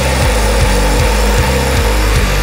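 Midtempo death metal: heavy distorted guitars over a steady kick-drum beat.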